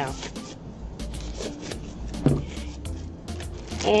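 Quick irregular crinkling and rustling of thin plastic as disposable kitchen gloves are pulled off and the zip-top bag is handled.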